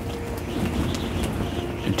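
Wind rumbling and shaking the fabric walls of a pop-up hunting ground blind, with a few faint ticks, under faint sustained background music notes.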